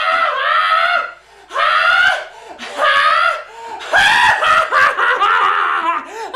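A man laughing hysterically in high-pitched, shrieking bouts, about four of them with short breaks between.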